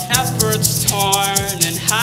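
Live acoustic band music: a hand shaker keeps a quick, even rhythm, about eight shakes a second, over a steady bass line and keyboard, with held sung notes that slide between pitches.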